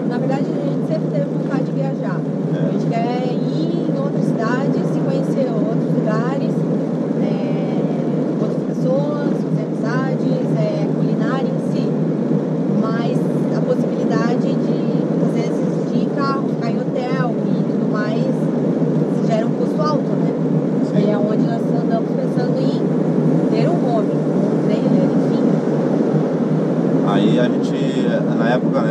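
Steady engine and road noise inside the cabin of a moving VW Kombi camper van, heard under people talking.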